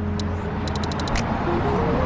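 Busy street ambience: a steady low hum of traffic, with a quick run of short high clicks about a second in.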